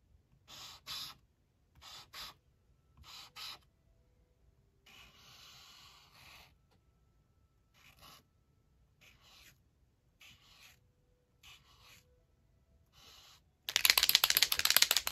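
Uni Posca paint marker drawing on sketchbook paper: about a dozen short, scratchy strokes, with one longer stroke about five seconds in. The marker is running a little dry. Right at the end comes a sudden louder rustle of the paper being handled.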